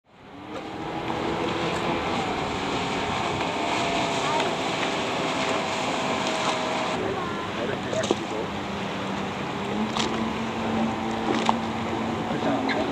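A 33 kW outboard motor running at speed on a planing boat, fading in over the first second, with water and wind noise around it.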